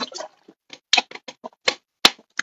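A quick, irregular run of sharp clicks and taps, about a dozen in two seconds, from objects being handled close to the microphone.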